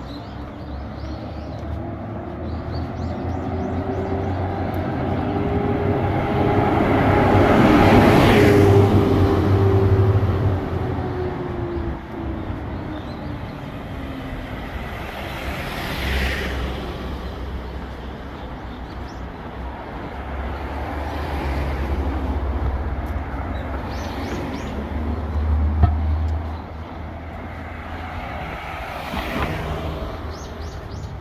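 Street traffic passing close by: a vehicle goes by loudest about eight seconds in, its tone rising and then falling as it passes. A small box truck passes right alongside about sixteen seconds in, and more vehicles go by near the end, over a steady road rumble.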